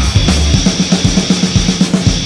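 Heavy metal song with the drum kit to the fore: a fast, even beat of bass drum and snare under a steady cymbal wash. The guitars drop back here.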